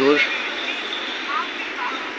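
Tea leaves and water at a rolling boil in a stainless steel electric kettle, giving a steady bubbling hiss. This is the stage of boiling the tea leaves before the milk is added.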